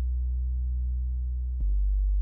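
Low, steady electronic drone of layered pure tones, shifting abruptly with a click to a deeper, slightly louder tone about one and a half seconds in.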